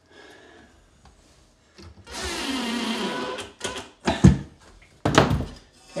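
Cordless drill driving a screw into a steel drawer slide for about a second and a half, its motor pitch sagging slightly as the screw seats. A few sharp knocks and a heavy thud follow as the drill is set down on the cabinet floor.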